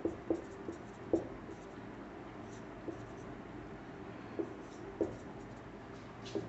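Marker pen writing on a whiteboard in short separate strokes: several close together in the first second or so, then a few more spaced out.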